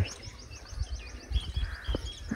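A bird calling in a fast series of short, high chirps, about ten a second, under a faint low rumble.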